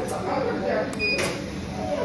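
A short electronic beep about a second in, from the chocolate tempering machine's control panel being pressed, over quiet talking and a few light clicks.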